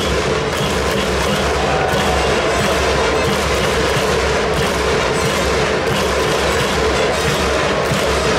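Continuous cheering from a baseball stadium crowd, loud and steady, with a repeating beat of drums and clapping under it.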